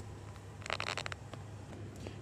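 Handling noise from a hand-held phone camera: a sharp click at the start, then a brief rustle about two-thirds of a second in, over a low steady hum in the vehicle cabin.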